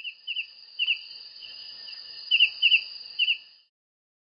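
Night ambience: a steady high insect trill, like crickets, with short paired downward chirps from a bird over it, about six pairs, loudest a little past the middle. It cuts in suddenly and fades out shortly before the end.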